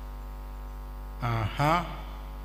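Steady electrical mains hum in the microphone and sound-system feed, a low buzz with evenly spaced overtones. About a second in, a short two-part vocal sound from a man's voice rises above it.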